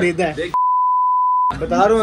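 Censor bleep: a steady, high, pure tone lasting about a second, starting about half a second in and stopping cleanly. All other sound is cut out under it, masking a word in a man's speech.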